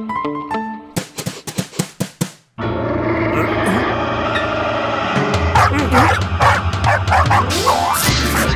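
Plucked guitar music, then a quick run of sharp clicks. After that, two cartoon dogs growl at each other, breaking into rapid barking and yapping from about five seconds in as they start to fight.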